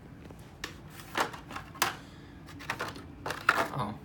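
Hot Wheels card-and-blister toy car packs being handled and shuffled: several sharp plastic and cardboard clicks and knocks.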